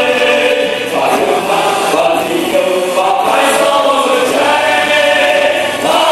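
A choir of singers singing a song together with musical accompaniment, in long held notes with short breaks between phrases.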